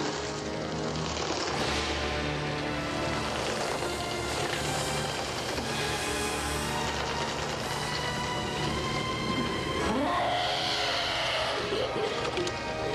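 Orchestral film score with sustained, brooding held notes and a low drone, swelling with a rising sound near the end.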